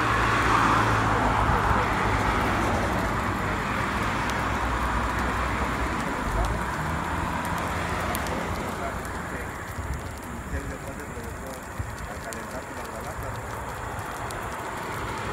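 Highway traffic: a vehicle's tyre and engine noise passing and fading away over the first several seconds. Afterwards quieter, with faint crackling from the burning tyres of a trailer dolly.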